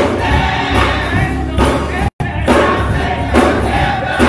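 Congregation and choir singing a gospel worship song with musical accompaniment, people clapping along. The sound cuts out completely for a split second about two seconds in.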